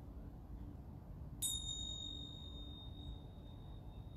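A small metal bell or chime struck once about a second and a half in, with a clear high-pitched ring that fades away over about three seconds, over a faint low outdoor rumble.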